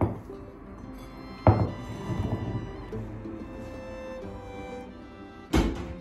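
Background music, with three dull thuds from a ball of dough being worked in a glass bowl and set down on a wooden tabletop: one at the start, a louder one about a second and a half in, and one near the end.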